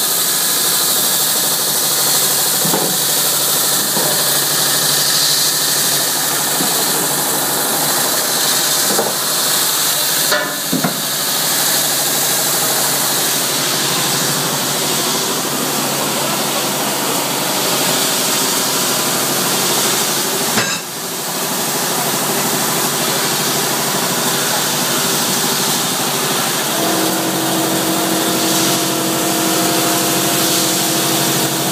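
ERNST deslagging machine running as flame-cut steel rounds pass through its deburring drum, which strips slag from the part edges: a loud, steady noise with a couple of brief knocks. A steady hum joins in near the end.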